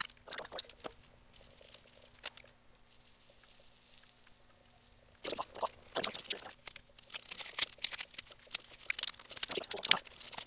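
Handling clicks and a faint steady hum. About five seconds in, duct tape starts being pulled off the roll in loud crackling rips and wrapped around a battery pack.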